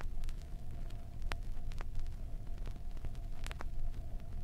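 Surface noise of a 7-inch 33⅓ rpm vinyl record playing between tracks: scattered clicks and pops from the groove over a steady low rumble and hum.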